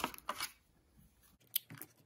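Handling noise from the cardboard packaging as the MP3 player is lifted out of its box tray: a few short scraping rustles, a pause, then more near the end.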